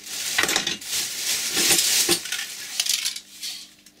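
Plastic carrier bag rustling and crinkling as it is rummaged through, with hard items inside knocking and clinking together in quick irregular clicks.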